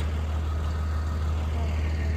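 A truck engine idling: a steady low hum.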